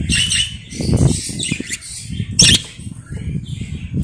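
Budgerigars chirping and chattering over a low, uneven rumble, with one short, loud burst about two and a half seconds in.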